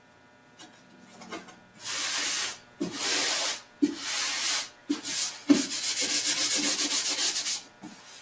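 Wax paper rubbed by hand over a painted canvas, spreading clear gesso: a series of rubbing strokes starting about two seconds in, ending in a longer run of quick back-and-forth strokes.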